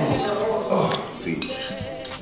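Metal spoons clinking and scraping against plates as people eat, with music and a voice underneath.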